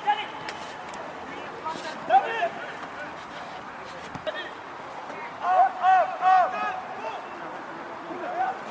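Voices shouting on a football pitch during open play: three short, high calls in quick succession a little past halfway, with a shorter shout earlier. Underneath is open-air ambience with a few faint knocks.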